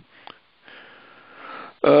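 A man drawing a breath, a soft noisy in-breath lasting about a second, followed near the end by a short spoken "uh".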